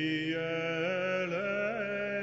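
Byzantine chant sung by a low male voice, one long held melismatic line that steps up in pitch partway through and winds through small ornamental turns.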